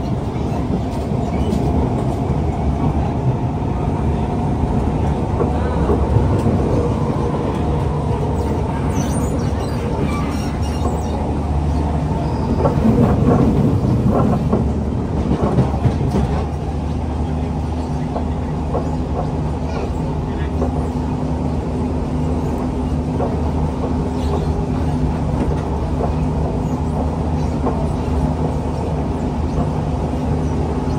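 Siemens C651 MRT train running, heard from inside the passenger car: a steady rumble of wheels and running gear with a constant hum. Between about 9 and 16 seconds in the running grows louder, with clatter of the wheels over the track.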